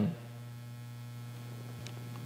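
Steady low electrical mains hum, with a faint click near the end.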